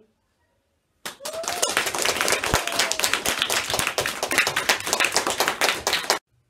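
Applause: a group of people clapping, starting about a second in and cutting off abruptly at the end.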